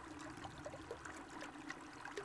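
Faint trickle of a small woodland stream running over rocks.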